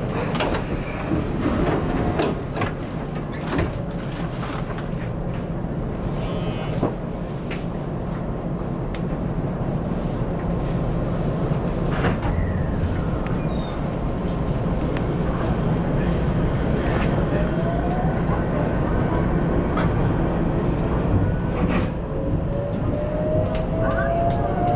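JR West 521 series electric train standing with a steady low hum, then starting off: about two-thirds of the way through, the traction inverter and motors begin a whine that rises steadily in pitch as the train gathers speed.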